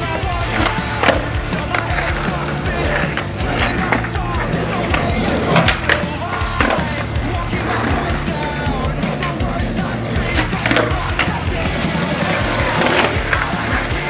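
Skateboard on concrete: wheels rolling with irregular sharp pops and clacks of the board from tricks and landings, over background music.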